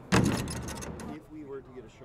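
A sudden loud clattering impact right at the start, with a rattle trailing off over about the next second, followed by people's voices.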